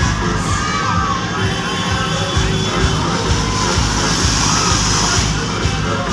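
Loud DJ music played through a truck-mounted speaker stack, with a regular heavy bass beat, and a crowd shouting and cheering over it. A high hiss joins in about four seconds in and stops just past five.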